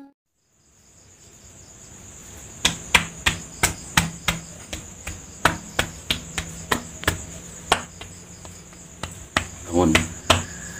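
Sharp slaps of a hand striking a person's shoulders and back during a massage-style treatment, coming irregularly two or three times a second from a couple of seconds in. A steady high trill of crickets runs underneath.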